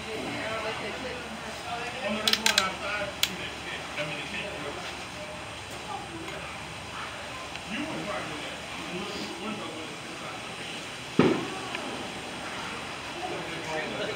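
Indistinct voices of people talking in the background over a steady hum. A few clicks come a couple of seconds in, and a single sharp knock about eleven seconds in.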